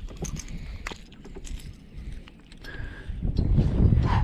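Wind buffeting the camera microphone, growing louder near the end, with a scatter of light clicks early on from hands working a crankbait out of a bass's mouth.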